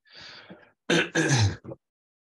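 A man clears his throat: a short breath, then two loud coughs in quick succession and a brief third one.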